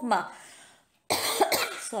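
A woman coughs: a sudden, harsh burst about a second in that lasts under a second.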